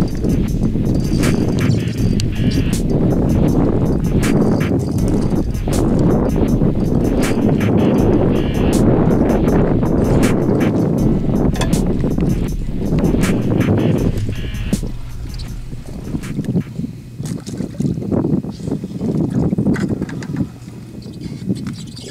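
Wind buffeting the microphone in a loud, low rumble, broken by many sharp knocks and clicks. It eases about fourteen seconds in.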